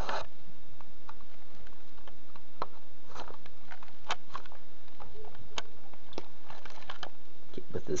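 Faint scattered clicks and rustles of handling over a steady low hum.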